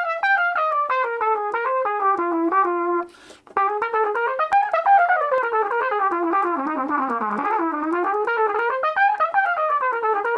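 Solo trumpet playing quick, evenly tongued jazz quaver lines with swing articulation: weight on the off-beat quavers, all notes kept the same length. A descending run ends on a held low note, and after a short break about three seconds in a longer phrase sweeps down and back up.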